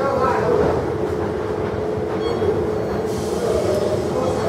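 Oslo metro train pulling away from the platform: a steady electric whine over the rumble of the cars rolling on the rails, with faint higher motor tones coming in about halfway through.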